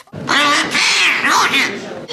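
Petrushka glove puppet's shrill, squawking voice, made with a swazzle held in the puppeteer's mouth, in high sliding cries for about a second and a half after a short pause.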